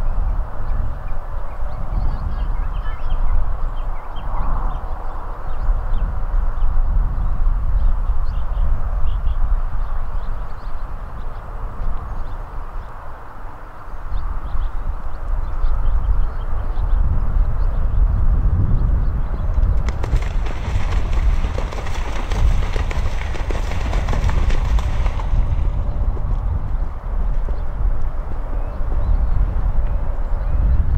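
Wind buffeting the microphone: a loud, gusting low rumble, with a stronger hiss for about five seconds two-thirds of the way through.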